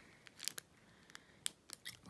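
Faint, scattered crackles and clicks of a plastic pastry wrapper being turned over in the hand.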